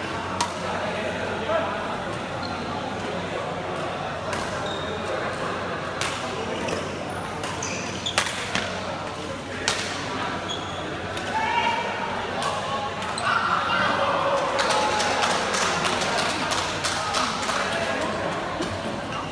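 Badminton rackets striking a shuttlecock during rallies: sharp, separate hits several seconds apart, then a quick run of hits near the end. Voices and chatter from around the hall run underneath.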